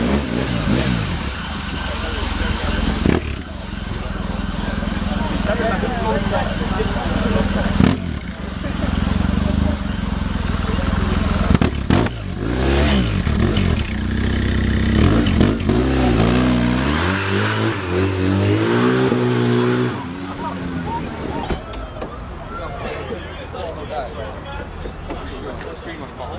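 Engine of a BMW-powered Diener quad bike running, then revved over and over, its pitch climbing and falling in the second half before it settles back.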